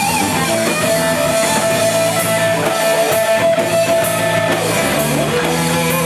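Live rock band playing: an electric guitar lead holds one long note for several seconds, then slides down to a lower note near the end, over bass guitar and drums.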